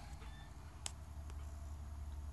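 A low, steady hum with one short click a little under a second in.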